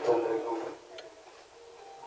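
A man speaking into a handheld microphone. His phrase ends under a second in, then comes a short pause with a single faint click about a second in.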